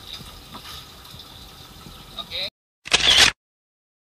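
Background noise with faint voices that cuts off abruptly about two and a half seconds in, followed by a single loud, brief camera-shutter sound effect about three seconds in, then silence.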